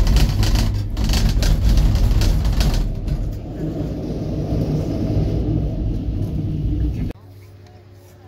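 Loud, uneven low rumble from a ski gondola terminal's machinery as cabins move through the station, with clattering in the first three seconds; it cuts off suddenly about seven seconds in.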